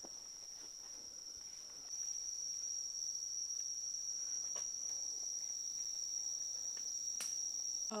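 Steady high-pitched drone of rainforest insects, one unbroken tone that gets louder about two seconds in.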